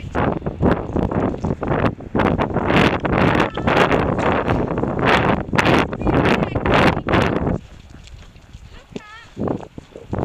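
A pony's hooves cantering on the soft arena surface, picked up by a helmet camera along with rubbing and rushing noise from the rider's movement. It is loud for about seven and a half seconds, then much quieter near the end.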